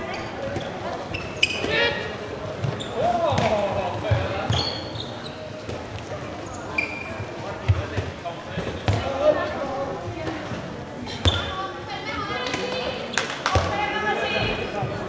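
A handball bouncing and thudding on a sports-hall floor during play, in scattered sharp knocks, with players' shouts and calls echoing in the hall.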